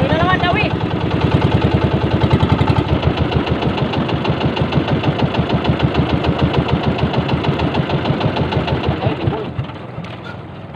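Outrigger fishing boat's small engine running at speed with a rapid, even pulsing beat. The engine sound drops away near the end. There is a brief rising squeal about half a second in.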